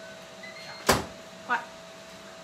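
An over-the-range microwave's door shut with one sharp clack about a second in, just after a bowl is lifted out.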